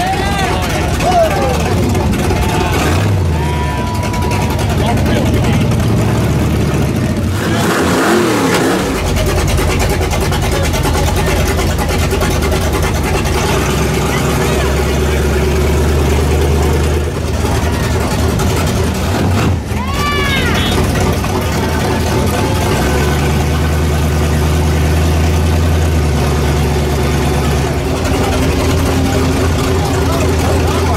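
Monster truck engine running steadily at low speed, a continuous low drone, with people shouting and whooping at it several times as it passes.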